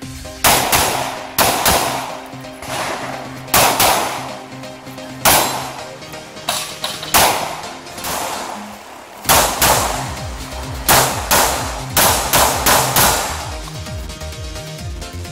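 Semi-automatic pistol shots fired in quick pairs and short strings, more than a dozen in all with brief pauses between groups, over background music.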